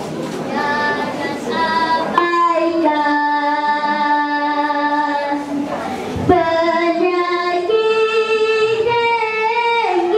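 A child's voice singing a dikir barat vocal line in long held notes that waver slightly, with a short break about six seconds in.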